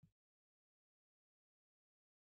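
Near silence: the audio is essentially empty.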